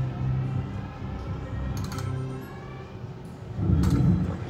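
Book of Ra Magic slot machine's electronic bonus jingle: a run of rising synthesized tones as the book scatter symbols trigger ten free spins. A louder low burst comes near the end.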